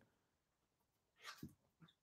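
Near silence: room tone, with a faint short sound a little past the middle.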